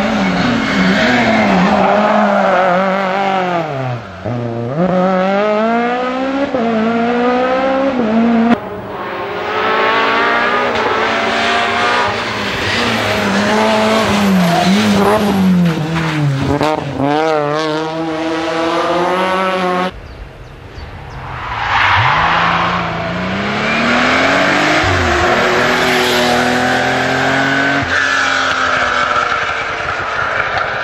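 Rally cars at full throttle on a tarmac stage, one after another in three cuts: a Citroën Saxo, a Peugeot 206, then a Porsche 911's flat-six. Each engine revs up and drops repeatedly through gear changes and braking for bends, with some tyre squeal.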